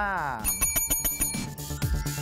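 A small metal bell rung in a rapid trill for about a second, just after a man's voice stops. Then electronic music with a steady beat comes in.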